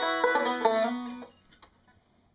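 Resonator banjo picking a fast bluegrass run that stops a little over a second in, its last low note ringing out briefly.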